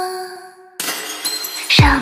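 Held music notes die away. About a second in comes a sudden crash sound effect with a bright ringing tail, and near the end a rising sweep drops into a deep falling boom.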